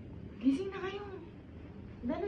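A single drawn-out vocal call, under a second long, that rises a little in pitch, holds, then falls away.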